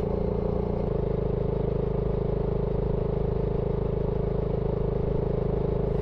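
BSA Gold Star 650's single-cylinder engine running at a steady cruise under the rider, with a small shift in its note about a second in.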